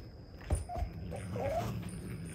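A domestic cat making two short, whining cries over a low growl as it gets mad at another cat, after a thump about half a second in.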